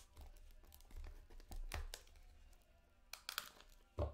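Faint rustling and scraping of a white cardboard trading-card pack box being opened and its contents slid out by hand, with a few light clicks and taps, several in quick succession near the end.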